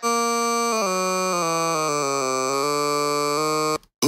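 Pitch-corrected hip hop vocal played back from Logic Pro's Flex Pitch: one long held "ooh" note. Its pitch steps down in several small steps and then back up, the effect of the edited note pitches. It cuts off suddenly just before the end.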